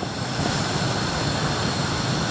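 A steady, even rushing noise with no distinct strikes or changes, like a fan or burner running in the kitchen.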